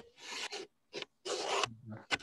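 A scraping, rubbing noise in three short strokes, the first and last about half a second long and a brief one between them.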